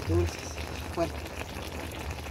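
Whole chicken, potatoes and corn simmering in their broth on a comal, a faint bubbling and sizzling over a steady low hum, under a brief spoken word.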